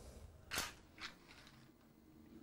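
Brief scraping and clattering of things handled at a kitchen sink: a sharper sound about half a second in, then a softer one a second in, over quiet room tone.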